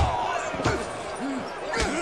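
Fight-scene punch impacts: one loud, heavy hit right at the start and two lighter hits later. Underneath, a crowd of men shouts and yells.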